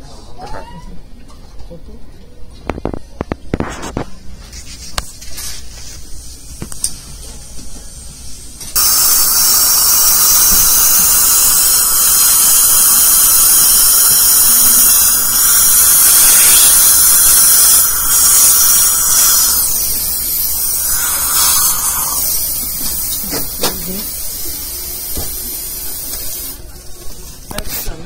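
Dental high-speed handpiece running in the mouth: a loud, steady high-pitched hiss and whine that starts abruptly about nine seconds in, lasts about eighteen seconds, and eases in level over its last few seconds. A few light clicks come before it.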